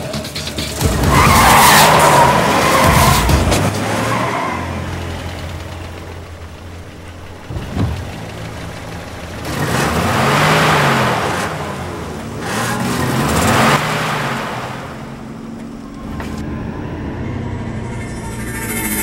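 A car engine revving in three rising and falling surges, about a second in, near the middle and a few seconds later, with tyre noise under it.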